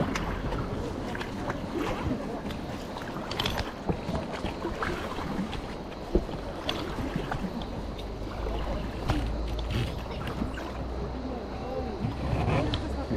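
Water around an inflatable river raft drifting on the current, with wind buffeting the microphone and scattered light knocks and taps. The wind rumble grows stronger a little past the middle and again near the end.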